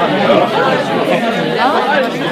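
Audience chatter: many people talking at once in pairs and small groups in a large hall, with some laughter.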